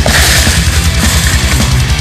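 Loud heavy-metal-style rock music with fast, driving low notes and a crash at the start.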